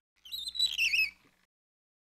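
A short, high, warbling squeak that wavers and falls in pitch for about a second, then stops.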